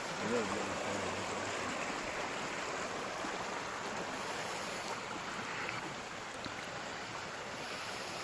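Small creek trickling over rocks, a steady rush of running water.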